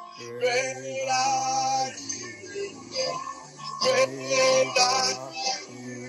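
Praise and worship song: a man singing over electronic keyboard chords, with bass notes held for a second or two at a time.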